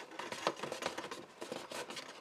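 Faint, irregular rustles and light taps of cardstock being handled and pressed down by hand.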